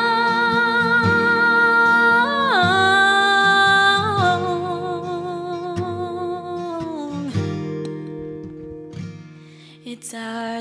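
A woman's singing voice holds a long final note with vibrato over acoustic guitar, dropping in pitch about two seconds in, stepping again about four seconds in, and ending about seven seconds in. The guitar rings on and fades away near the end as the song closes.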